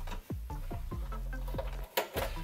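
Background electronic music: a steady bass line with a quick run of short notes falling in pitch, about four or five a second.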